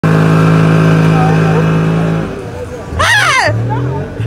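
Boat outboard motor running at speed, a steady drone for about two seconds that then fades out. About three seconds in, music starts: swooping melodic phrases that repeat over a held bass note.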